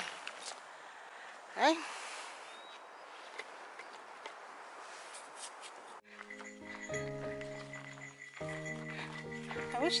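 Backpacking camp stove burner hissing steadily under a covered pot of water, then cut off about six seconds in by background music with sustained notes.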